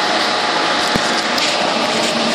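Steady rushing noise, like a running fan or blower, with a brief low thump about a second in.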